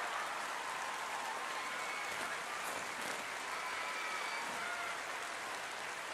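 Large audience applauding steadily after a song.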